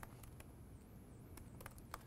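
Near silence: room tone with a few faint, scattered clicks from a computer keyboard as a web address is typed.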